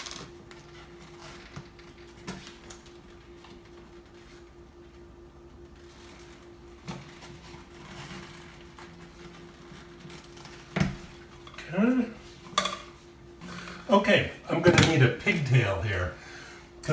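Metal pliers clicking and clinking against copper wires and a metal electrical box as the wires are straightened out, a few sharp clicks several seconds apart. A faint steady hum runs underneath.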